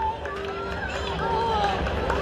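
A man talking through a public-address loudspeaker, with crowd chatter around and a steady hum underneath.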